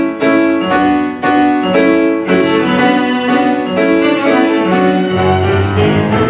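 Piano and string quartet playing an instrumental introduction: repeated piano chords at first, then sustained bowed notes from the violins, with a low cello line coming in near the end.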